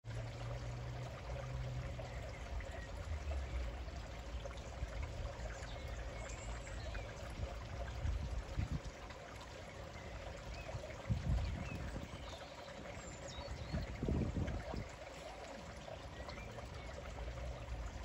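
Steady background hiss like trickling or running water, with uneven low rumbles that swell briefly twice in the second half.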